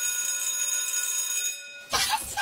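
Electric school bell ringing steadily, then dying away just before the two-second mark.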